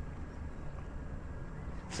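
Quiet outdoor background: a steady low rumble with no distinct event.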